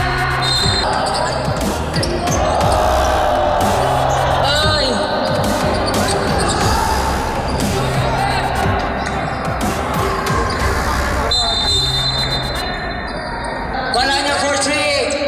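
Game sound in a gymnasium: a basketball bouncing on the hardwood court amid crowd noise, over background music with a bass note repeating about every two seconds. A steady high tone sounds for about two seconds near the end.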